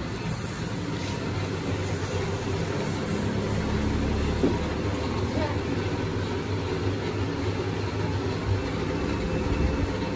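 A vehicle engine idling steadily under street background noise, heard as a low, even rumble.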